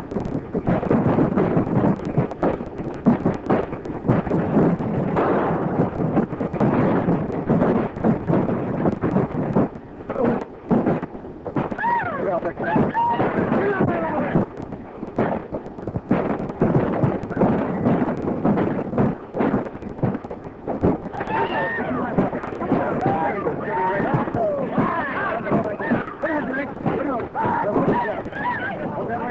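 Repeated revolver and rifle gunshots over wordless shouting and yelling voices, in a battle scene on an early-1930s film soundtrack. The yelling is loudest about twelve seconds in and again through the last seven seconds.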